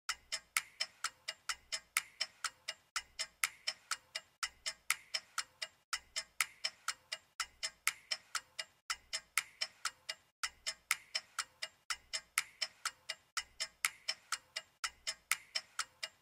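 Steady, even ticking, about three ticks a second, with a faint low pulse under it roughly once a second.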